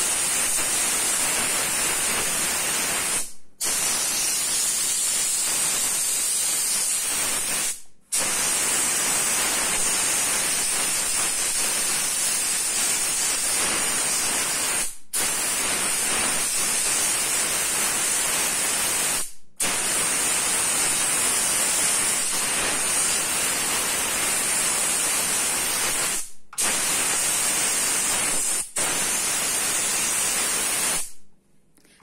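Steam cleaner jetting steam through a small nozzle onto electric hob hotplates to lift grease: a steady, loud hiss. It stops for a moment six times and starts again each time.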